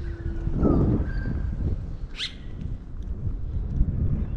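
Steady low wind and road rumble from riding a scooter, with a few bird calls over it: a short whistle about a second in and a quick upward-sweeping call about two seconds in.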